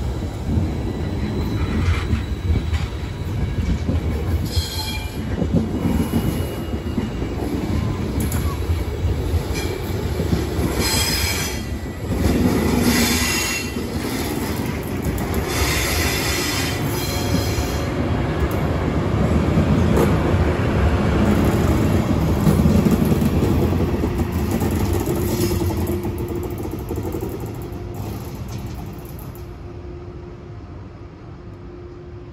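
Intercity passenger coaches rolling past with a steady rumble, their wheels squealing in short high-pitched bursts several times. The rear electric locomotive (an E414) passes around the middle, and the rumble fades away over the last few seconds as the train leaves.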